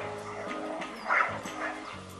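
Soft background music from a children's cartoon soundtrack, with a short dog bark sound effect about a second in.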